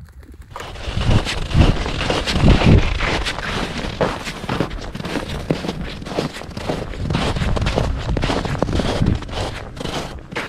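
Wind buffeting the microphone in uneven gusts, with scattered crackling.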